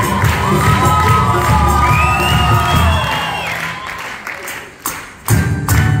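Student tuna ensemble playing and singing while the audience cheers and shouts over it. About four seconds in the music drops away briefly, then the full group comes back in loudly with tambourine.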